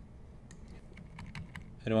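Computer keyboard key tapped about half a dozen times in quick, uneven succession: the bracket key stepping the brush size down.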